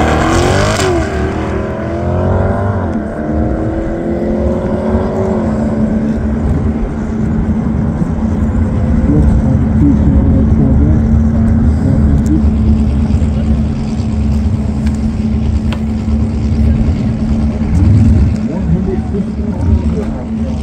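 Chevrolet C8 Corvette's V8 accelerating hard from a standing start, its pitch climbing in three pulls broken by upshifts in the first five or six seconds, then fading as it runs away. A steady low rumble and hum carry on afterwards.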